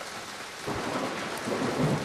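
Steady rain with a low rumble of thunder rising a little under a second in.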